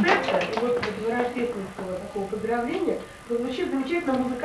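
A woman speaking in Russian, with a few short claps at the very start.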